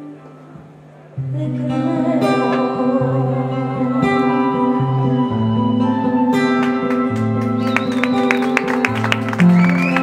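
Acoustic guitar playing an instrumental passage: after a fading note and a short lull, plucked notes come in about a second in over a bass line that changes about once a second, growing busier with quicker, sharper attacks in the second half.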